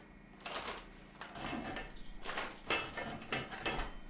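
Thin plastic bag crinkling and rustling in short, irregular bursts as pieces of dried cutlassfish are put into it for coating with starch powder. The bursts come more often in the second half.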